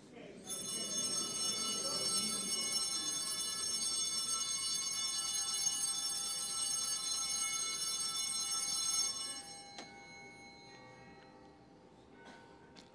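Altar bells shaken in a steady ringing peal at the elevation of the consecrated host. The peal stops about nine and a half seconds in, and the ring fades away.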